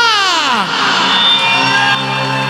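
Live wedding band music: a male singer ends a phrase with a long downward slide in pitch, then the band's held notes carry on in a short gap before the next sung phrase.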